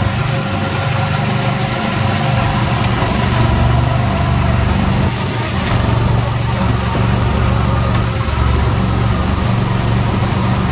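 Go-kart engines running steadily on the track, heard from a kart's seat: an even engine drone with little change in pitch.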